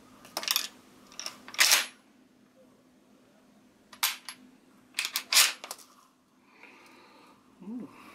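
Mossberg 590 Mariner 12-gauge pump-action shotgun being worked by hand with a dummy round. Early on come a few metallic clicks and a short slide as the round is pushed into the tube magazine. About four seconds in there is a sharp click, and about a second later a quick run of metal clacks as the fore-end is pumped back and forth, cycling the dummy round through the action in a function check.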